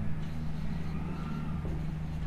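Steady low hum of background noise, with faint strokes of a marker writing on a whiteboard.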